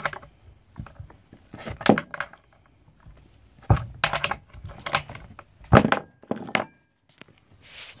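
Metal clinks and knocks from a wrench on the side-cover bar nuts of a Stihl MS361 chainsaw as they are tightened down after chain tensioning. They come as a string of separate sharp strokes with short pauses between, followed by a brief rustle near the end.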